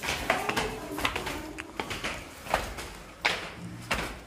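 Irregular footsteps and knocks of people climbing stairs.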